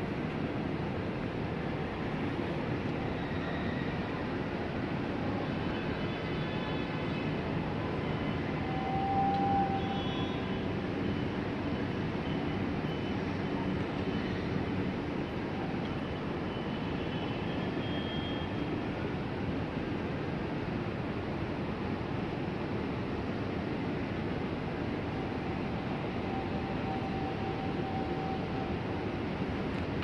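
City ambience: a steady hum of distant traffic rising from the streets below, with a few faint brief tones, the clearest about nine seconds in.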